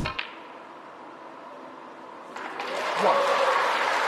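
A snooker arena crowd in a quiet hush, breaking into applause a little over two seconds in.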